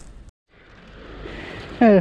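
Faint, steady outdoor background noise. It drops out completely for a moment near the start, then returns and swells slightly before a man's brief 'uh' at the end.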